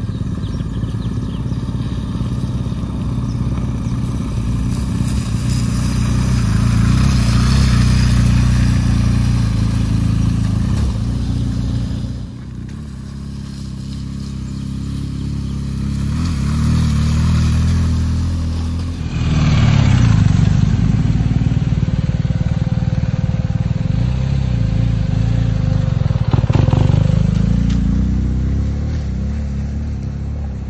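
BMW R 1250 GS motorcycles' boxer-twin engines running as the bikes ride by, the engine note rising and falling with the throttle. The sound dips about halfway through, then swells again.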